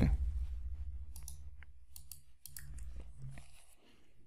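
A handful of soft, irregular computer keyboard keystrokes over a faint low hum, as a short word is typed and the file is saved and run.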